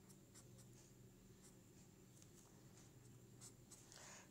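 Faint scratching of a writing tip on paper in a few short, separate strokes, as small marks are written by hand.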